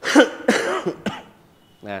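A man coughing and clearing his throat: two loud coughs in the first second.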